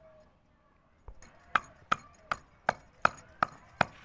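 Stone pestle pounding Indian jujubes in a stone mortar, crushing the fruit. After a quiet first second the knocks start and come evenly, about two and a half a second, each sharp with a short ring.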